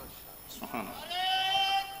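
A man's or boy's voice chanting Quran recitation in the melodic tilawat style, holding one long high note from about a second in.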